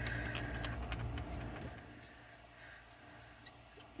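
Brush-tip marker dabbing and tapping colour onto cardstock: faint, scattered light taps and scratches of the nib on paper.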